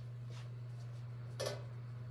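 Steady low hum with a short, sharp crackle about one and a half seconds in, as pieces of dry injera are handled over the mesh basket.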